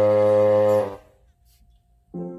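Intro music ends on one long held chord that dies away about a second in, followed by near silence.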